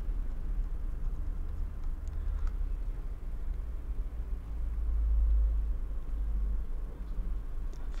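A low, steady rumble that swells for a second or two around the middle, with a couple of faint ticks about two seconds in.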